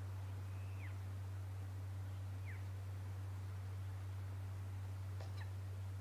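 A steady low hum runs under the nest-cam audio. Over it come three faint, short bird calls that slide down in pitch, about a second in, midway and near the end.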